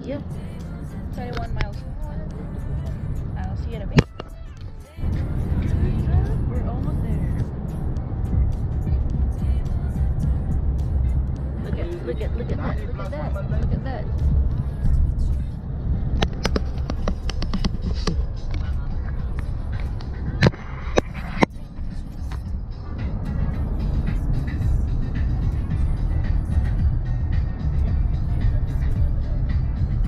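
Steady low road and engine rumble inside a minivan cabin at highway speed, with music playing and occasional voices over it. The rumble drops out briefly about four seconds in, and a few sharp clicks stand out.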